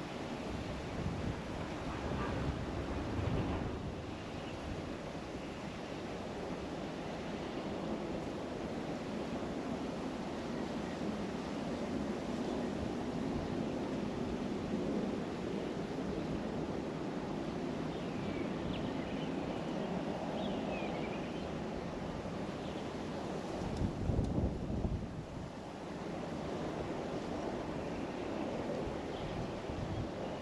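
Wind buffeting the microphone over a steady outdoor hiss, with louder gusts about two seconds in and again near the three-quarter mark. A few faint chirps come near the middle.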